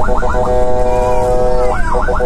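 Ambulance siren heard from inside the vehicle: a fast yelp, then a steady tone held for about a second, then the rapid up-and-down yelp returns near the end.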